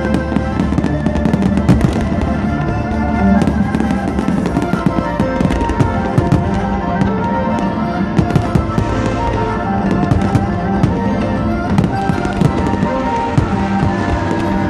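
Aerial fireworks bursting in quick succession, a dense run of sharp bangs and crackles, over steady music playing along with the show.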